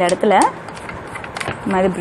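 Short spoken phrases, with quieter brushing and faint clicks in between, about midway: a bristle brush scrubbing oil off the metal shuttle hook of a sewing machine.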